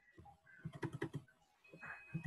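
Keystrokes on a computer keyboard: a quick run of clicks from about half a second to just past one second in.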